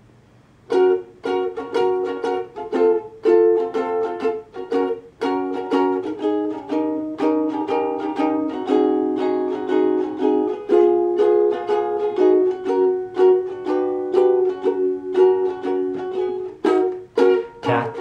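Ukulele strummed in a steady rhythm of changing chords, starting about a second in: the instrumental intro before the singing begins.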